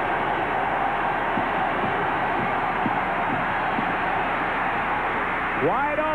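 Steady stadium crowd noise at a football game, dull and thin as on an old TV broadcast. A man's voice comes in near the end.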